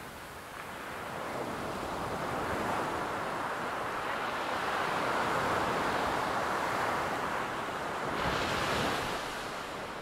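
Ocean surf: a wave's rush swells over the first few seconds, holds, then brightens into a hiss and fades near the end.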